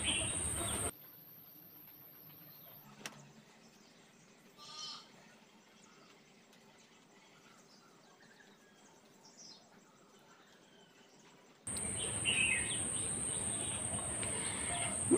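Near silence for most of the stretch, broken by a short, faint bird trill about five seconds in and a fainter chirp near ten seconds. A louder hiss of background noise fills the first second and returns near the end.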